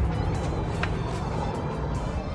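Steady low road rumble of a car heard from inside the cabin, under background pop music.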